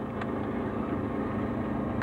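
A car engine idling steadily, with two faint clicks, one just after the start and one at the end, as power switches on the equipment are flipped.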